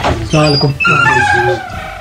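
A person's voice, with no words made out and its pitch bending, over background music.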